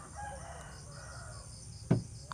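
A rooster crowing faintly in the distance for about a second. Near the end there is a short, louder knock as the clutch pedal is pushed down by hand; the pedal is very light and does not come back up.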